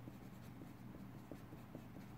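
A pen writing capital letters on paper: faint, short scratching strokes over a steady low hum.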